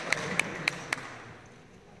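Audience applause dying away, with one person's sharp claps close to the microphone, about three a second, that stop about a second in.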